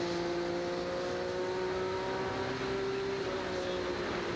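Oldsmobile Busch Grand National stock car's V6 racing engine, heard from the in-car camera, holding a steady high note at speed with a slight rise in pitch.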